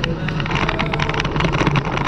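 Bicycle rolling over a rough gravel shoulder. The handlebar-mounted camera picks up a steady low rumble with many sharp rattling clicks.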